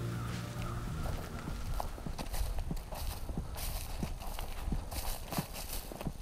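Irregular dull knocks and clicks, a few each second, from a hunter moving with his gear, with a held music note fading in the first second.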